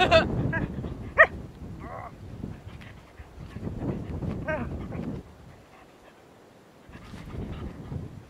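A collie-type dog playing and scuffling, with one short, sharp yip about a second in and a few softer whines.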